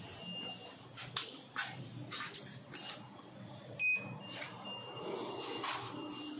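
Inside a Hitachi passenger lift car: several sharp clicks and knocks, then a short electronic beep about four seconds in. A faint high steady tone comes and goes.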